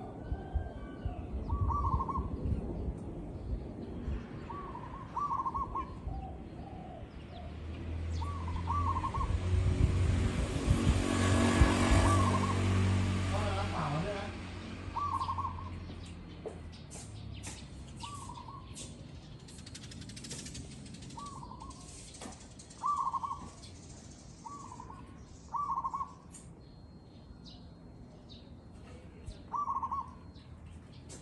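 Zebra dove calling: about fifteen short phrases of quick cooing notes, spaced a second to a few seconds apart. Around the middle, a broad noise with a low hum swells, is the loudest thing heard, and fades away.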